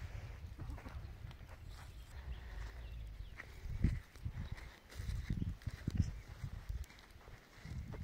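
Footsteps and scuffs on dry dirt, with a few dull thumps about four, five and six seconds in.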